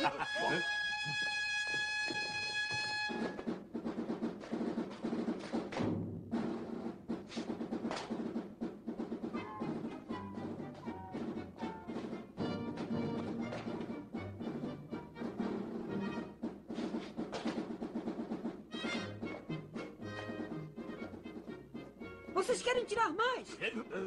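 Orchestral film score with timpani and brass. It opens with one high note held for about three seconds, then carries on as busy, changing orchestral music.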